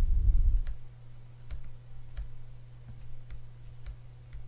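Pen stylus tapping and scratching on a tablet screen during handwriting: light, irregular clicks about once or twice a second, over a steady low electrical hum, with a brief low rumble at the start.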